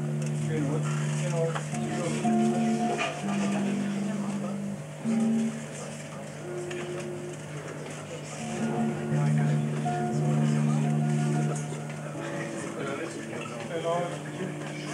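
Electric bass played solo through an amplifier: held notes and chords of two or three notes, each ringing for a second or more, with a brief lull about halfway through.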